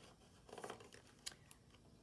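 Near silence with a few faint paper rustles and a small click from a picture book's pages being handled.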